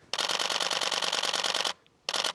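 Canon EOS-1D X DSLR shutter and mirror firing a continuous high-speed burst: a rapid, even run of clicks that lasts about a second and a half and stops suddenly.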